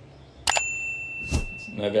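A click followed by a short, high bell ding that rings on for about half a second and fades: the sound effect of an animated subscribe-and-notification-bell button.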